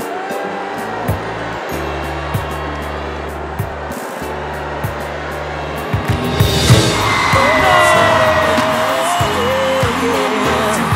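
Pop backing music with a steady bass line. About six seconds in, a studio audience breaks into cheering and whoops over it, and the sound gets louder.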